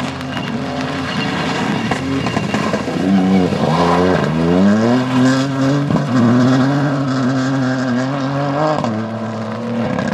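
Ford Fiesta rally car's engine running hard at high revs. About three seconds in the revs drop and then climb steeply again as it accelerates, and they are held high and steady until near the end.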